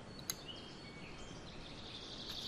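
Wooden Faber-Castell Polychromos colored pencils being lifted out of their metal tin, with one light click of pencil on pencil or tin near the start. Faint high bird chirps sound in the background.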